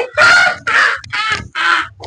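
A man's put-on witch voice: a harsh, rasping cackle of about five syllables, each weaker than the last.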